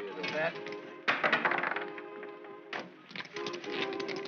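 Film soundtrack: orchestral score holding steady tones under background men's voices, with bouts of rapid clicking about a second in and again near the end.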